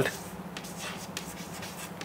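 Chalk drawing a line and writing letters on a chalkboard: faint scratching with a few light taps.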